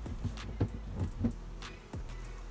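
A quick run of short knocks and scrapes from a wooden beehive cover being lowered onto the hive body and pushed into place, over a low steady hum.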